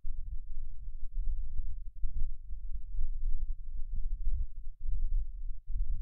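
A low, uneven rumble that swells and dips irregularly, with nothing in the higher pitches.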